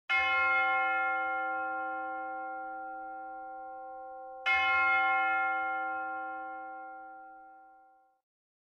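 A bell chime struck twice, about four and a half seconds apart, each strike ringing with many overtones and fading slowly.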